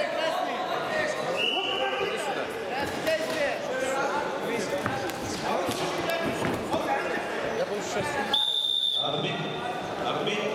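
Several people shouting over one another during a freestyle wrestling bout in a large hall, with thumps of the wrestlers on the mat. A short high whistle sounds about a second and a half in, and near the end a steady high whistle, held about a second and a half, stops the action.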